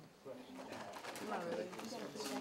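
Background talk of several students' voices in a classroom, murmured and overlapping, with no single voice clear.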